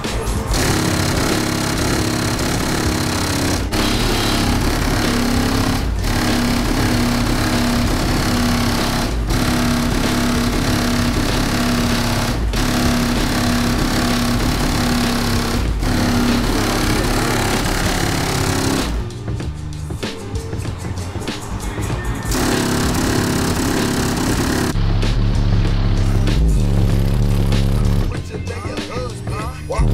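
Loud music with heavy bass played through a car audio system's subwoofers, heard from outside the car at its trunk. There is a quieter passage about two-thirds through, and the deep bass is stronger near the end.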